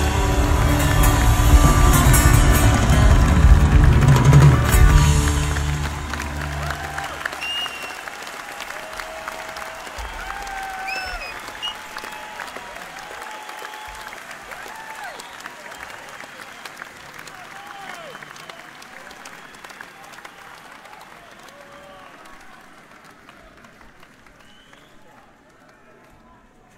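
A live band's last chord rings out and stops about six seconds in. Then a concert audience applauds, cheers and whistles, and the sound fades steadily down.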